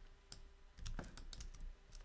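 Faint keystrokes on a computer keyboard: a scattered, uneven run of light clicks, as text is pasted and typed at a terminal.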